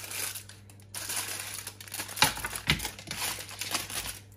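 Aluminium foil packets crinkling as they are handled and set down on a perforated metal pizza tray, with a few knocks, the loudest about halfway through.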